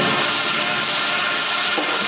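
Techno mix in a breakdown: a loud, steady hissing wash of noise over held synth tones, with no kick drum.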